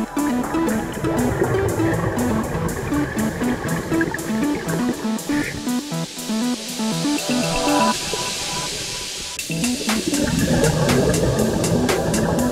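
Background music with plucked guitar over a steady beat. Toward the end a swelling hiss builds and the beat drops out briefly, then it comes back in full about ten seconds in.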